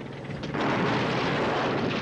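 Cartoon sound effect of a bulldozer advancing: a loud, heavy engine rumble that comes in suddenly about half a second in and holds steady.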